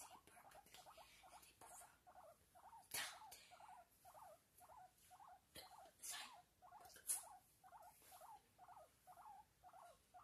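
A small pet making a faint, even run of short squeaky chirps, about three a second, with a few louder sharp clicks.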